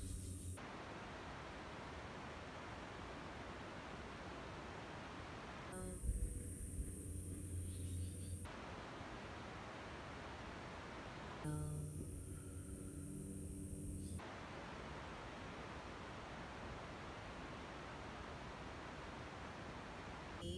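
Steady faint hiss, broken twice for a few seconds, about six and twelve seconds in, by a low steady hum that starts with a soft bump.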